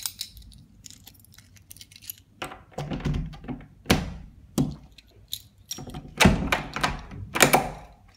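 A door's rim lock rattled and clunked by hand: a series of sharp clicks and knocks as the knob is turned and the latch worked, thickest and loudest in the last two seconds. The lock will not open from the inside.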